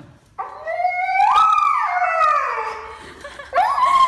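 Siberian husky howling in two long, drawn-out calls. The first rises, holds and falls away over about two and a half seconds; the second starts rising near the end.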